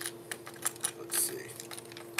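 Lead jig heads and metal hooks clicking and rattling against each other and the plastic compartment walls of a tackle box as fingers pick through them, in quick irregular clicks with a brief rustle about a second in.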